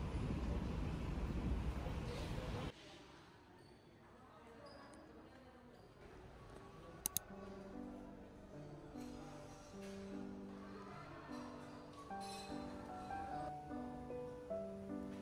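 Loud street traffic noise beside a double-decker bus on a busy road, cutting off abruptly after a couple of seconds. Then quieter room sound, with soft background music of gentle keyboard-like notes coming in about halfway and a brief double click.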